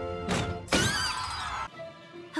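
Background music, then a short burst and a loud shattering crash sound effect from about three quarters of a second in, with high ringing tones that fall away before the sound cuts off suddenly.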